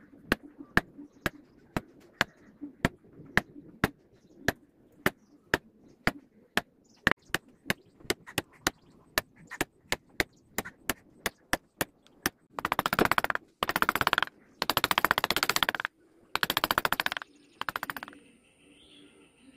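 Mallet tapping a carving chisel into wood, light sharp strikes about two to three a second, coming a little faster after about seven seconds. In the last five seconds a louder scratchy rasping comes in four bursts of about a second each.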